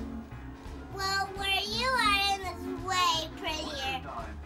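A young child's high voice singing drawn-out, sliding notes from about a second in, over background music with a steady low beat.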